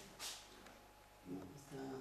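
Faint, quiet talking in the second half, with a brief soft rustle shortly after the start.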